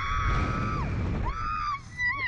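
A woman screaming on a slingshot amusement ride: one long, high, held scream that ends just under a second in, then a second, shorter one about a second and a half in. Heavy wind rumble on the ride's onboard microphone runs underneath.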